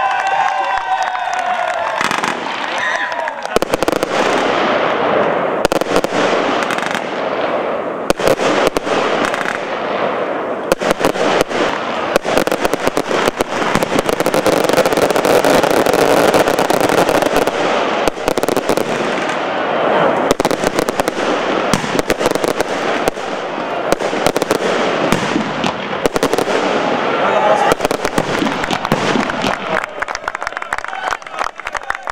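Fireworks crackling: a rapid, dense string of bangs and pops that starts about three and a half seconds in and keeps going without a break.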